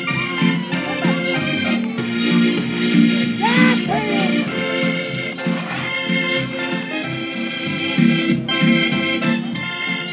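Organ music played live, with steady held chords.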